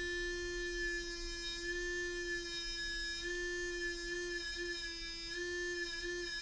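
Fairywill FW-507 sonic toothbrush running with a steady buzz, its tone wavering and dipping several times as a fingertip touches the brush head. The motor bogs down at the slightest contact, which the dentist takes for a motor too weak to withstand any pressure on the brush head.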